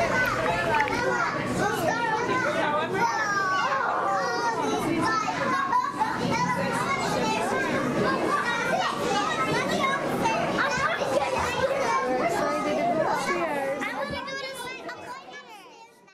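A crowd of children's voices chattering and calling over one another, fading out over the last two seconds.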